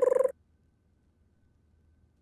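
A short fluttering, rapidly pulsing pitched tone, an imitation of a flute's flutter-tonguing, cuts off about a third of a second in. The rest is near silence.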